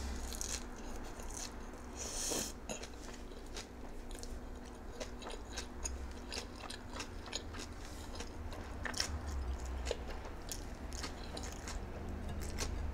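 A person chewing a mouthful of nori seaweed and shredded cabbage, close to the microphone: many small crisp crunches and wet mouth clicks, with one louder crunch about two seconds in.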